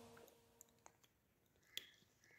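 Near silence with a few faint handling clicks, the clearest one near the end, after the tail of background music dies away at the start.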